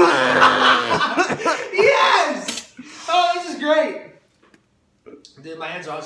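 Garbled voice of a young man speaking through a mouth stuffed with marshmallows, mixed with laughter, for about four seconds; after a short pause, more voice near the end.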